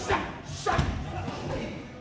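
Punches landing on Thai pads held by a trainer: two sharp smacks about half a second apart.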